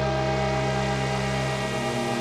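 Behringer DeepMind 6 analogue polyphonic synthesiser playing a sustained ambient pad: a steady droning chord, its low notes changing near the end.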